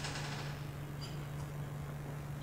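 Quiet room tone: a steady low hum, with a couple of faint small ticks about a second in.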